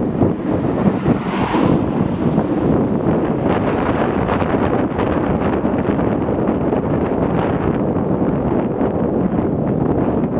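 Wind buffeting the microphone: a loud, steady rush with scattered crackles and a brief brighter gust about a second and a half in.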